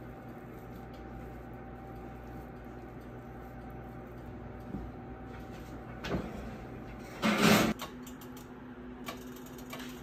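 A steady low hum with faint steady tones. A soft knock comes about six seconds in, and a brief, loud scraping slide follows about a second later.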